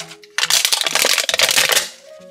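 Clear plastic wrap of an LOL Surprise ball being peeled back and crumpled by hand: a dense crinkling crackle that starts about half a second in and lasts about a second and a half.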